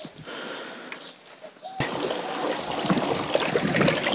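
Water splashing and gurgling in a homemade vortex compost tea brewer's barrel as it jets from the two PVC elbow return arms just after the brewer is plugged in, preceded by a sharp click nearly two seconds in.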